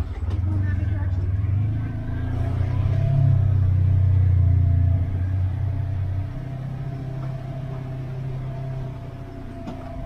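Side-by-side UTV's engine droning at low speed on a rocky trail, heard from inside the cab; it pulls harder and louder from about two to five seconds in, then eases off. A faint steady whine rides above the drone.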